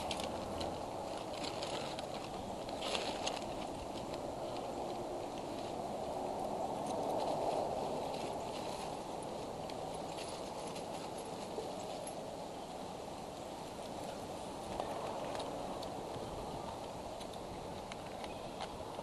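Close handling of a plastic bucket and nest sticks: scattered small clicks and rustles over a steady low rushing noise that swells a little about seven or eight seconds in.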